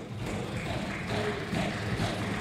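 A pause in speech: steady background noise of a large hall with a faint low hum, and no distinct event.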